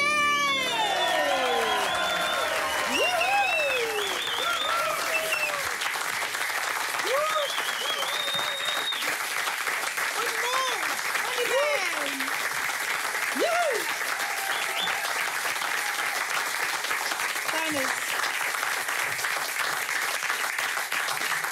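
Audience applauding after a song, steady clapping throughout, with whoops and cheering voices over it, most of them in the first two thirds.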